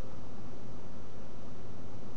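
Steady hiss of background noise on a voice recording, with nothing else sounding.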